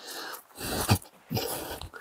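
A person breathing hard close to the microphone: three breathy, unvoiced breaths about half a second each.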